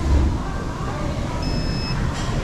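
A single electronic beep about half a second long, near the end, from the stand-mounted infrared temperature scanner at the entrance, over a steady low background rumble with a brief thump at the start.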